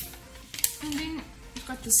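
Clicks and crackles of hard plastic packaging being handled as a small electric eyebrow trimmer is taken out of its plastic tray, with a sharp click early on and a crackle near the end, and a little low voice between.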